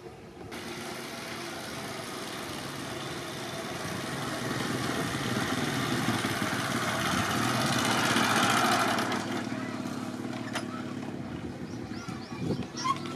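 Small Honda motorcycle engine running as the bike rides closer. It starts about half a second in, grows louder until about three-quarters of the way through, then eases off.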